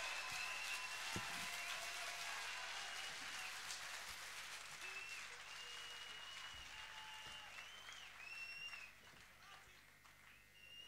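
Live concert audience applauding, with several long, high whistles over the clapping, fading out near the end.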